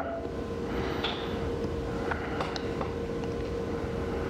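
Steady background room noise with a constant hum and a few faint ticks.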